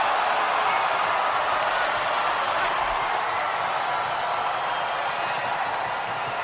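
Large arena crowd reacting to a line of an in-ring rap: a dense, steady wall of crowd noise that eases off slightly toward the end.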